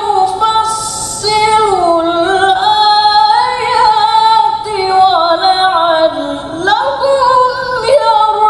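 A man reciting the Quran in the melodic mujawwad style, one high voice holding long notes that slide up and down with ornamental wavers, falling low near the end and then leaping sharply upward.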